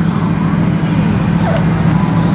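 A steady low engine hum from idling vehicles nearby, with faint voices in the background.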